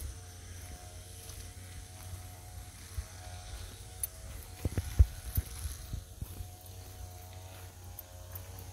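Footsteps and handling knocks from a walker on a leafy forest path over a low rumble of handling on the microphone, with a cluster of sharp knocks about four to five and a half seconds in, the loudest about five seconds in.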